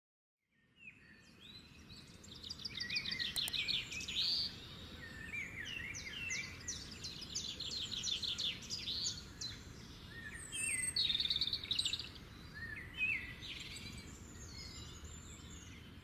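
Several birds singing, with quick high chirps and rapid trills, over a steady low background noise; it starts about half a second in, after a moment of silence.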